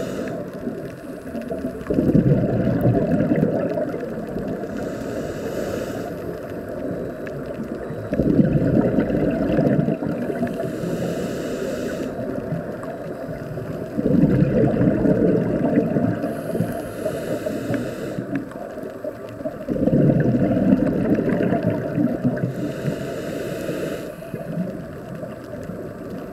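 Scuba diver breathing through a regulator, heard underwater: a low bubbling rush of exhaled bubbles about every six seconds, each lasting about two seconds, alternating with a shorter high hiss of inhalation, four breaths in all.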